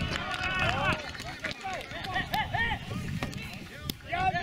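Several people shouting and cheering at once as a penalty kick goes in for a goal, with short excited calls overlapping over a low rumble. A single sharp knock comes near the end.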